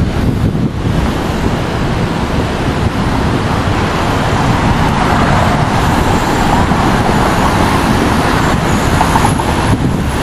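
City street traffic noise with wind rumbling on the microphone. The traffic grows louder through the second half.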